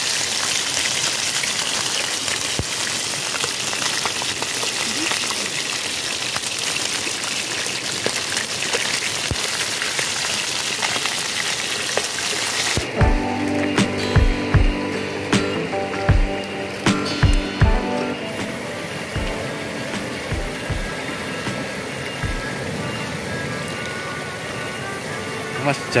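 Small freshly caught fish frying in oil in a pan over a wood fire, a steady sizzle. About thirteen seconds in it gives way abruptly to music with a beat and a melody.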